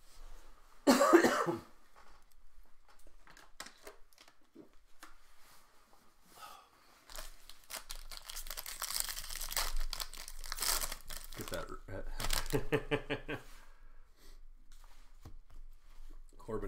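A single loud cough about a second in. From about seven seconds the foil wrapper of a Bowman Draft card pack crinkles and tears as it is ripped open, followed by a short hum of a man's voice.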